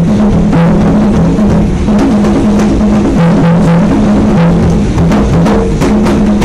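A pair of congas played with bare hands in a quick, continuous rhythm of strikes. Underneath runs a held low tone that alternates between two pitches.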